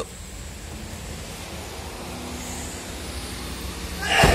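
Steady low hum with an even hiss: a small car idling, heard around its cabin.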